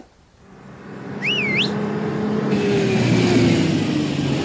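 School bus engine running, fading in over the first second and a half and then holding a steady hum. A short bird chirp comes about a second in.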